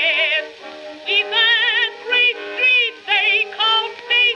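A 1922 acoustic-era Okeh 78 rpm record of a blues number for contralto and orchestra playing on a turntable. Short phrases of notes with a wide, fast vibrato sit over steadier accompaniment, and the sound is thin, with no bass.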